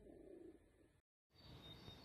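Near silence: faint room tone, cutting to dead silence for a moment about a second in where one recording ends and the next begins.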